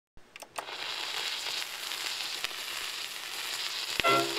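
Surface noise of a 1928 Brunswick 78 rpm shellac record playing its lead-in groove before the music: a steady crackling hiss, with a few sharp pops in the first second and another about halfway through.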